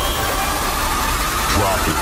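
Car engine idling steadily, mixed into an advertisement soundtrack with a voice over it.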